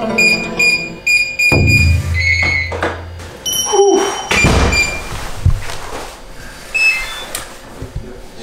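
Comic background music with a quick run of short, bright plucked notes over a low held tone. A few knocks and thumps come in the second half.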